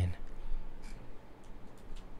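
Low background noise with a few faint, short clicks and no speech.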